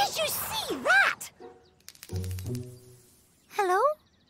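A cartoon character's wordless voice making gliding 'ooh'-like sounds near the start and again near the end, over sparse notes of a children's song score. A quick run of small ticks sits in the middle.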